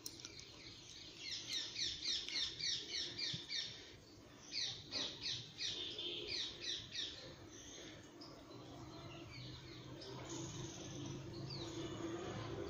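A bird calling in two runs of short, high chirps, about three to four a second, with fainter chirps near the end, over a low steady background hum.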